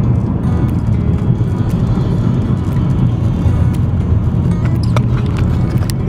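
A steady low road and engine rumble heard from inside the cabin of a moving car, with background music under it.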